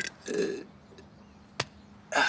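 A man's short, low "uh", then a single sharp click about a second and a half later.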